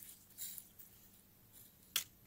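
A metal spatula scraping salt crystals out of a porcelain evaporating basin: a short soft scrape about half a second in, then a single sharp click of metal on the basin near the end.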